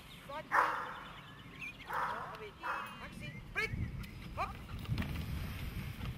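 A dog barking twice, once about half a second in and again about two seconds in.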